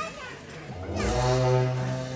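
Tibetan long horns (dungchen) of a Cham dance sound a deep, steady blast that begins about a second in and holds.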